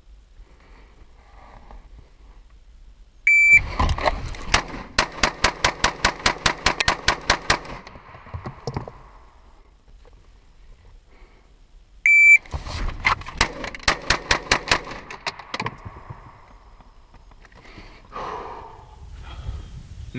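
A shot-timer beep, then a rapid string of pistol shots fired inside a pickup truck's cab, about four or five shots a second for several seconds. A second beep and a second string of about a dozen shots come some eight seconds later.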